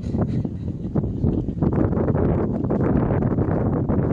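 Wind buffeting the microphone outdoors, a dense, gusty low rumble.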